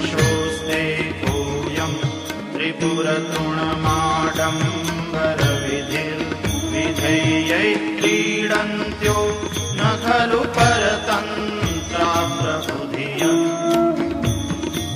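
Indian devotional music accompanying a Sanskrit hymn, with a steady drone, a melody bending in pitch and regular hand-drum strokes.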